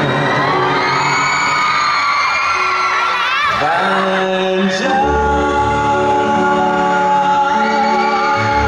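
Live pop concert heard from the audience: a male singer over an amplified backing track, with fans whooping and screaming over the first few seconds. A heavy bass beat comes in about five seconds in.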